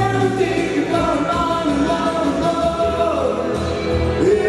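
A live rock band playing: electric guitar and keyboard synthesizer, with sung vocals holding long notes.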